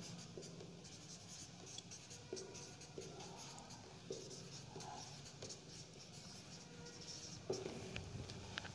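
Marker pen writing on a whiteboard: faint, irregular short strokes and squeaks of the felt tip on the board.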